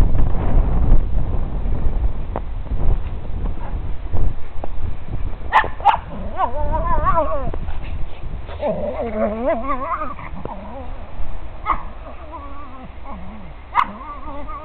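A dog barking and whining in wavering, high-pitched calls, which begin with a couple of sharp barks about five seconds in. This is the owner's own dog, not the snow-playing puppy. A low rumble on the microphone fills the first few seconds.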